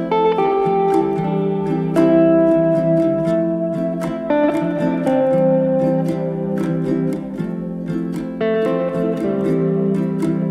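Instrumental background music with plucked notes, a few new notes each second over held tones.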